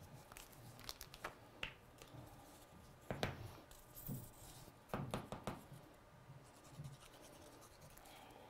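Faint handling of paper strips and a plastic bottle of liquid glue on a cutting mat: soft rustles, scrapes and light taps, with a few louder knocks about three and five seconds in.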